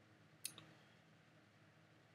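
Near silence: faint room tone, broken by a single short click about half a second in.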